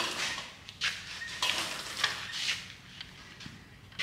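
A few light metallic clicks and knocks, spaced unevenly, of steel parts being handled.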